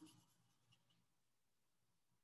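Near silence, with a few faint taps and scratches of chalk writing on a chalkboard.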